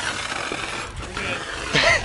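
Dry-chemical powder fire extinguisher discharging with a steady hiss, sprayed up under a truck onto a burning brake rotor. A voice shouts near the end.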